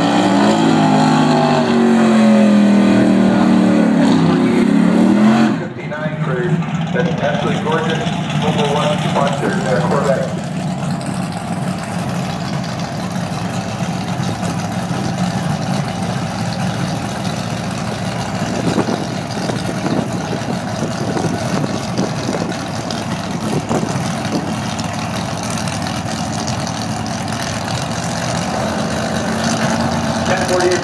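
Drag race car engines revving hard for about five and a half seconds, then cut off suddenly. After that, a car engine runs steadily at a lower level.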